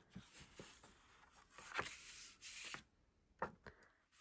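Faint rustling and rubbing of a large sheet of paper as it is lifted and slid across a cutting mat, in several short bursts, with a couple of soft taps near the end.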